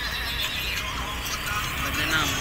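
Background music, with a goat bleating over a low steady rumble.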